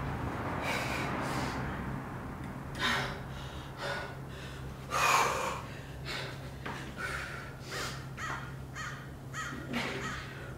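A woman's hard breathing during a high-intensity exercise interval: short, forceful exhalations about once a second, with a steady low hum underneath.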